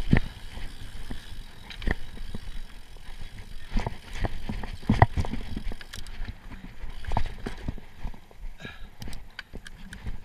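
Giant Trance Advanced full-suspension mountain bike rattling down a dirt singletrack at speed: irregular knocks and clatter from the bike over bumps and roots, over a low rumble of tyres on dirt. The loudest clatter comes about five seconds in.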